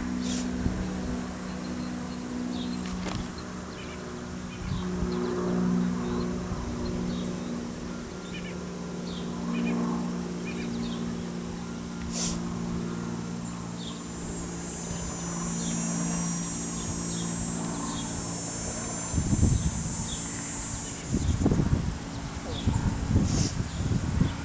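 Roadside outdoor sound: a steady low hum runs through most of it, a high insect buzz rises for about four seconds in the middle, and wind rumbles on the microphone near the end.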